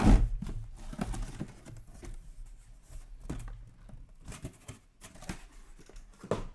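Cardboard handling: small cardboard card boxes being pulled out of a cardboard shipping case and stacked. There is one loud thump at the start, then scattered softer knocks and rustles.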